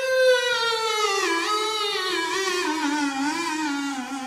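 A single buzzy, reedy tone from a small instrument held to the mouth, sliding slowly down nearly an octave with a slight wobble in pitch.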